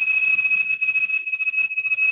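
A loud, steady high-pitched whistle holding a single pitch on the video-call audio: an unwanted noise on the line that the host suspects is microphone feedback.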